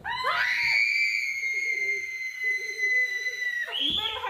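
A child's long, high-pitched scream, held on one pitch for about three seconds and breaking off near the end.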